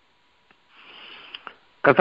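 A man's breath drawn in, lasting about a second, heard over a telephone line, with speech starting again near the end.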